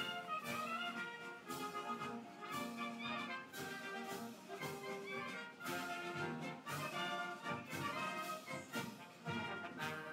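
Orchestral music with brass leading over strings, playing continuously with a regular beat.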